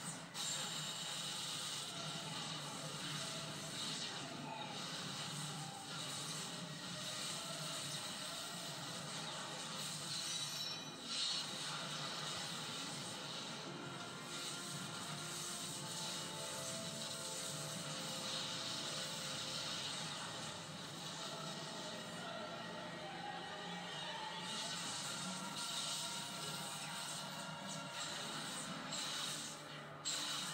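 Dramatic background music from a TV action scene playing on a television, with scattered effects such as ice shattering.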